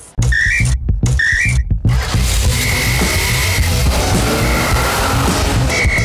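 Television show's closing jingle: two short rising whistle toots about half a second and a second and a half in, then loud upbeat music with a steady beat and long held whistle-like notes.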